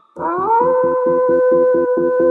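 A cartoon wolf howl: one long call that slides up at the start, then holds a steady pitch, over a fast pulsing beat.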